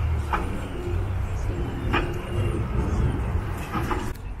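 Twin outboard motors of a 33-foot Regal 33XO running at low speed, a steady low drone. Two short knocks come about a third of a second and two seconds in.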